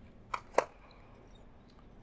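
Two short clicks about a quarter of a second apart, then faint room tone.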